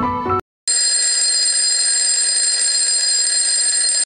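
Piano music cuts off half a second in; after a short gap an alarm bell rings steadily for about three seconds and stops abruptly, signalling the end of a 25-minute pomodoro work session.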